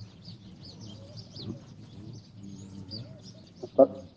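Small birds chirping over and over in high, quick calls, with a faint murmur of voices underneath; a man's voice cuts in briefly near the end.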